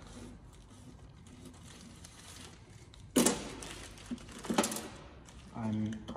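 Plastic packaging of a wiring connector kit crinkling as it is handled, with a sudden sharp rustle about halfway through and a second one about a second and a half later.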